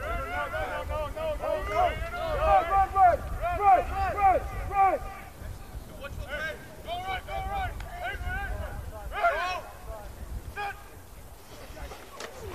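Football players shouting calls across the field before the snap, in bursts that pause for a moment about five seconds in and then resume. A steady low wind rumble on the microphone sits underneath.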